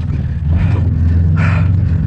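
Vehicle engine running steadily under load as it drives off across rough ground, a continuous low drone.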